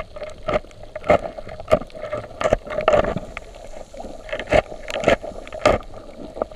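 Muffled underwater noise heard through a camera's waterproof housing: a steady low hum of water movement with a string of irregular short knocks.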